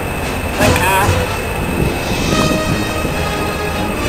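Low rumble of the Thomas the Tank Engine locomotive running in toward the station, with a brief voice nearby. Music with held notes starts about two seconds in.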